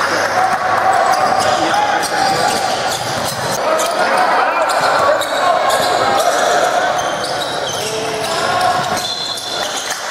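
A basketball bouncing on a hardwood gym floor during play, with players' voices calling out over it.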